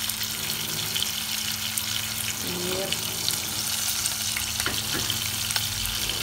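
Beef steak frying in hot butter in a nonstick pot: a steady sizzling hiss with scattered small crackles.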